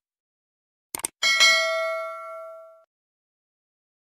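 Subscribe-button sound effect: a quick double click about a second in, followed at once by a single bell ding that rings on and fades away over about a second and a half.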